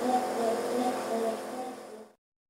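Electric compressor of a pulsating-airflow nasal nebulizer running with a steady hum, growing quieter toward the end.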